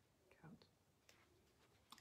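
Near silence: room tone, with a faint short breathy voice sound about half a second in and a few faint clicks.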